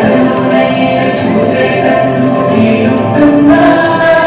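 A recorded Hindi song playing loudly for a dance: singing over a full instrumental backing.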